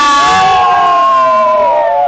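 Several riders on a swinging boat ride shouting together in one long, held cry that slides slowly down in pitch.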